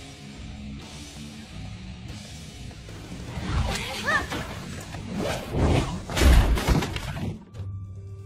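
Film soundtrack: low background music, then from about three and a half seconds in a quick run of heavy thuds and crashes with something shattering, stopping abruptly near the end.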